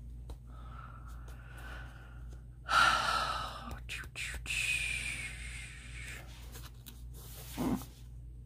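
A woman's breathy exhales and sighs close to the microphone, a few of them, the loudest about three seconds in, with a short low hum near the end.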